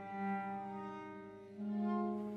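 Live contemporary chamber music: violin, viola and cello bowing long held notes that swell and fade, with a new, louder chord entering about one and a half seconds in.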